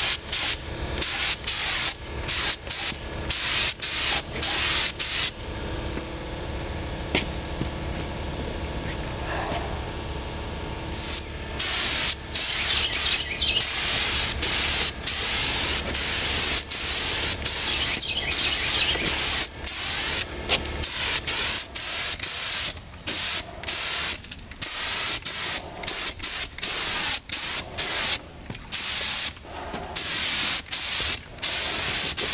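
Gravity-feed air spray gun spraying primer onto a motorcycle frame, its hiss starting and stopping in quick short bursts as the trigger is pulled and released. For several seconds after about five seconds in, the hiss turns softer and steady, then the quick bursts resume.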